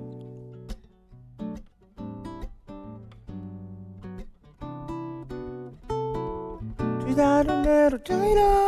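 Nylon-string classical guitar played fingerstyle: separate plucked notes and chords, each ringing and fading, as the introduction to a song.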